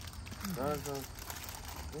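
Men talking: a short voiced sound about half a second in and a 'yeah' at the very end, with faint crinkling of a snack wrapper being handled.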